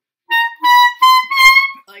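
Clarinet played high in the altissimo register: four short notes, each a step higher than the last. The tone is deliberately harsh, the sound young students get in the high notes when the tongue dips down.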